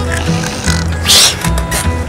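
Background music with a steady bass line, and about a second in a short, sharp spit into a bucket.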